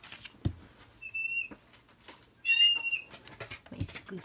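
Two short high-pitched whistle-like squeaks, the second louder and wavering, with soft low thumps about half a second in and near the end.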